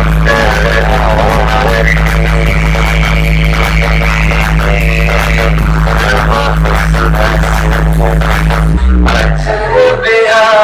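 Loud DJ music from a large truck-mounted sound-system rig during a bass-heavy sound check: a heavy, steady low bass drone under a wavering melody. Near the end the bass slides down in pitch and cuts out.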